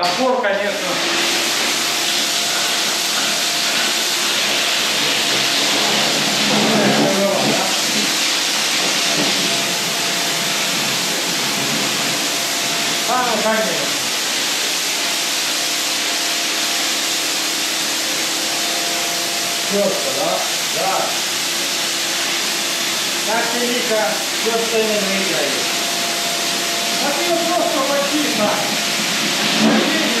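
STIHL pressure washer running, its high-pressure water jet hissing steadily as it sprays concrete walls and floor, with a faint motor hum underneath.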